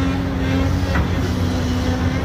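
A large vehicle or machine engine running steadily at idle: an even low drone with a steady hum above it.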